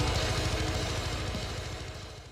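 Deathcore distorted guitars and drums fading out at the end of a song, a dense, rapidly pulsing low end sinking steadily in level.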